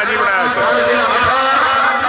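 A man's voice talking without pause, in the style of a live sports commentator.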